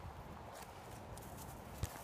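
Quiet outdoor air with faint, irregular rustling footsteps on dry grass and fallen leaves, and one short click near the end.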